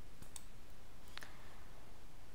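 A few faint clicks from a computer mouse over low steady hiss.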